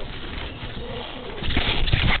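Low, wavering coo-like animal calls, joined by bumps and rustling in the last half second.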